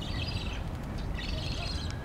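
Small birds chattering in two quick bursts of rapid high chirps, the second about a second in, over a steady low rumble.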